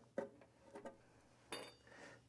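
Faint handling sounds: a few light clicks and knocks as a rubber bellows priming pump is fitted onto the espresso machine's intake tube, with a short, slightly louder scrape about one and a half seconds in.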